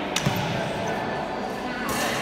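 Two sharp knocks close together, about a quarter second in, from white synthetic training sabres striking during a fast sparring exchange.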